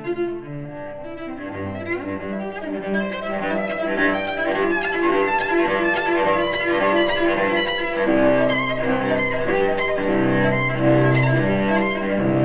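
Solo cello played with the bow: the 1769 Joannes Guillami cello. It plays a quick run of changing notes that starts quieter and grows louder about three to four seconds in, with low notes entering about eight seconds in.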